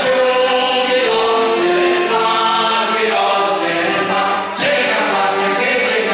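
A small mixed group of amateur voices singing a folk song together in unison, with accordion accompaniment. The notes are held long and step between pitches, with a brief drop in the sound about four and a half seconds in between phrases.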